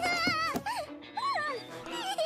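Anime soundtrack: a puppy's high, wavering whine, then two short whimpers that fall in pitch, over background music.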